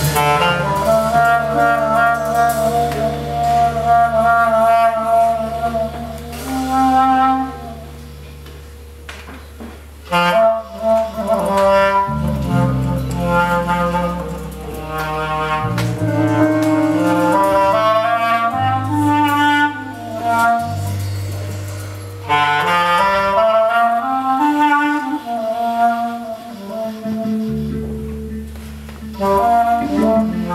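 Live band playing a Balkan cocek, with clarinet and trumpet carrying the melody over electric bass, drums and keyboard. The band drops to a softer passage for a couple of seconds about a quarter of the way in, then comes back in full.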